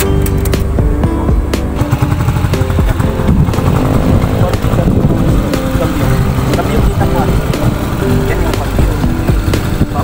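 A Skygo motorcycle pulling a sidecar tricycle, its engine running steadily as it is ridden, under background music.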